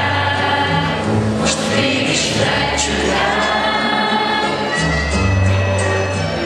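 A choir singing, many voices together holding long notes over sustained low notes.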